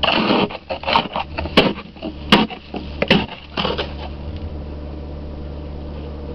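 Ice scraper strokes on the car's snow- and ice-covered glass, a quick run of scrapes and knocks for about four seconds that then stops. A steady low hum from the idling car runs underneath.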